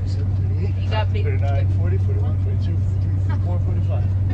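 Coach bus engine running with a steady low drone, heard from inside the passenger cabin, with people talking.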